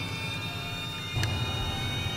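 Low, steady rumbling drone, a suspense sound effect, that steps up in level with a faint click just past a second in.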